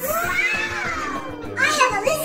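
A child's voice making one long drawn-out exclamation that rises and falls in pitch, over steady background music, with quick choppy voice sounds near the end.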